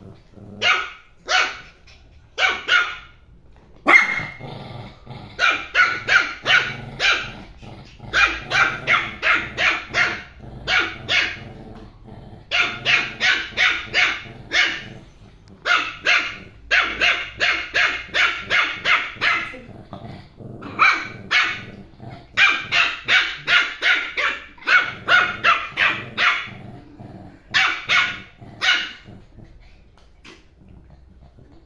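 Yorkshire terrier puppy barking with high-pitched yaps, in quick runs of several barks separated by short pauses.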